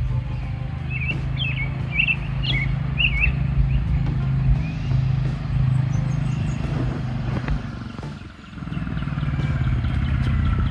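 Single-cylinder engine of a 2023 Royal Enfield Classic 350 motorcycle running as it rides toward the camera, its note dipping briefly about eight seconds in before picking up again. Birds chirp in the first few seconds.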